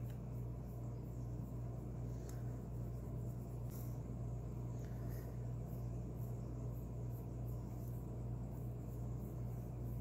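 Faint scratching of a Prismacolor colored pencil's strokes on paper, in a few short scrapes, over a steady low hum.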